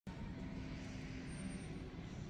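Steady background hum and noise, with no distinct events.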